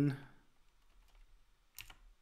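Computer keyboard keystrokes: a couple of short clicks near the end, after a stretch of quiet room tone.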